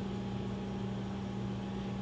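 Steady low background hum with faint hiss and no distinct event.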